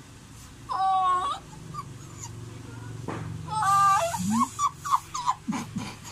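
A dog whining: two drawn-out high whines, the first about a second in and the second partway through, followed by a run of short whimpers.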